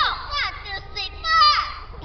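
Speech only: a woman's high-pitched voice over a PA microphone calling out "iku zo" and a count of "1, 2, 3, 4", with pitch sweeping down sharply on the words.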